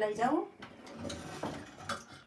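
Steel spoons and plates clinking and scraping as people eat from steel dishes, with a sharp clink near the end. A brief voice is heard at the very start.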